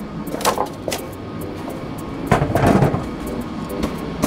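Handling noises: a few scattered knocks and clunks, with a louder scraping rustle about two and a half seconds in.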